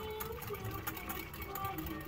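Wire whisk beating a liquid mixture in a glass measuring jug: a rapid run of clicks as the wires hit the glass. A song plays underneath.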